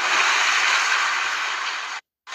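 Swimming-pool water splashing and churning just after a person dives in: a loud rushing splash that slowly dies away.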